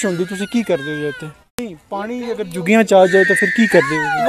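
People talking, with a sudden short drop-out and a click about one and a half seconds in. Near the end a high-pitched voice holds one drawn-out note, then slides down.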